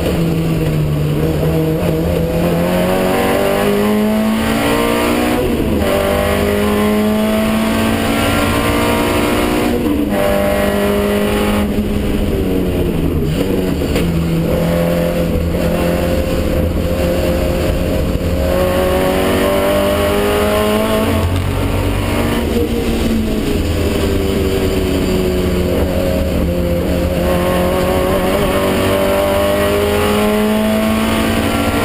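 Historic racing car's engine heard from inside the cockpit, under hard load around the circuit. Its pitch repeatedly climbs and then drops back or cuts briefly as the driver lifts off and changes gear.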